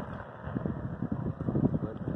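Wind buffeting the microphone in irregular gusts, a rough low rumble with no steady tone.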